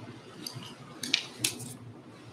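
A short cluster of crisp rustles and clicks about a second in, the loudest two about a third of a second apart, over quiet room noise.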